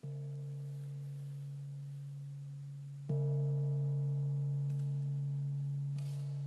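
A deep gong struck twice, at the start and again about three seconds in, the second stroke louder. Each stroke rings on with a steady, pure low hum and slowly fades.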